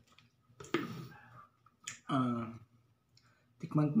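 Sharp plastic clicks as the blue lid goes back onto a plastic water pitcher, each followed by a man's short voiced 'ah' falling in pitch, the kind of gasp that follows a mouthful of spicy noodles.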